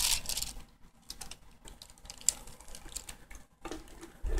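Plastic clicks and clacks of a 6x6 puzzle cube's layers being twisted by hand, busier in the first half second and then sparse, with one sharper click a little past halfway.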